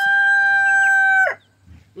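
Rooster crowing: the long held final note of the crow, a steady pitched call that drops in pitch and ends about a second and a quarter in.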